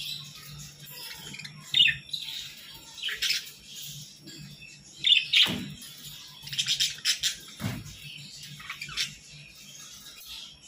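A flock of Hagoromo budgerigars chirping and chattering in irregular bursts, loudest about five seconds in.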